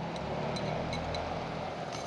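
Sauce sizzling in a wok of aromatics frying in hot margarine, a steady hiss, with a few faint clicks of a spoon scraping the glass sauce bowl.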